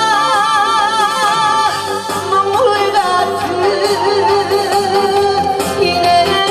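A woman singing a Korean trot song live into a microphone over an instrumental backing, with a wide vibrato on her held notes.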